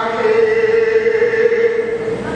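A man's chanting voice holding one long, steady note as part of Sikh religious recitation.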